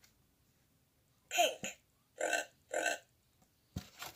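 A sound book's animal button plays a recorded pig oinking three times through its small speaker, followed by a short low thump near the end.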